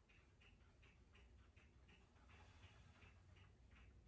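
Near silence: quiet room tone with faint, regular ticking, about three ticks a second.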